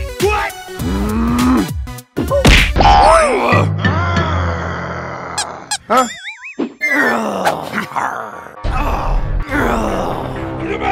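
Cartoon soundtrack: a character grunting and groaning without words, over background music. There is a sharp whack about two and a half seconds in and a warbling, rising cartoon sound effect about six seconds in.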